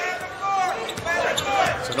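Basketball being dribbled on a hardwood court, with short high squeaks from players' sneakers and arena crowd noise behind.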